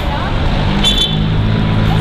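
City street traffic with a vehicle engine running close by, a steady low hum that comes up about a second in. A brief high-pitched tone sounds about a second in.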